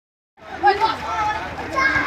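Several children shouting and calling out to each other as they play in a swimming pool, starting just under half a second in.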